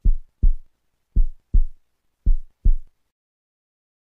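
Heartbeat sound effect: low double thumps in a lub-dub pattern, about one beat a second, three beats, stopping about three seconds in.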